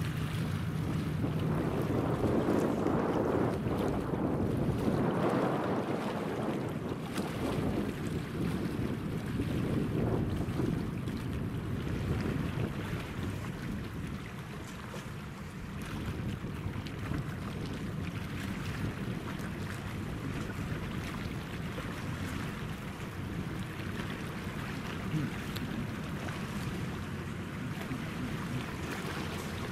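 Wind buffeting the microphone in gusts over choppy river water lapping, with a low rumble underneath.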